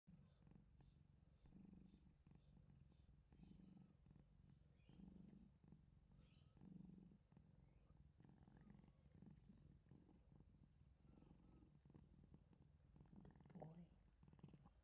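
Domestic cat purring, faint and low, swelling in slow waves with each breath while its head is scratched. A short louder noise comes near the end.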